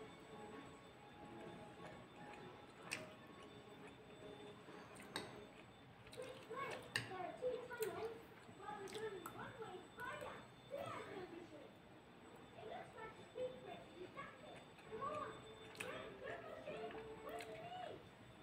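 Faint voices in the background, with a few light clicks of a metal spoon against a plate.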